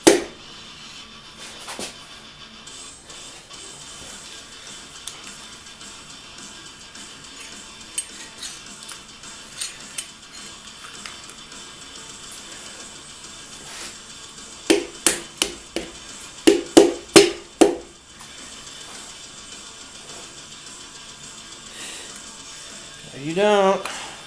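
A radio playing music in the background, with scattered light clicks and a quick run of sharp metallic knocks about two-thirds of the way through, from tools being handled on an engine block.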